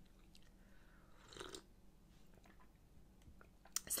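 One short, faint slurping sip from a mug, about a second and a half in, with a few tiny clicks around it.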